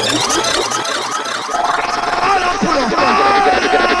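A sampled man's voice with laughter over a thin electronic music bed in a DJ mix transition; the bass cuts out for about a second near the start, then returns.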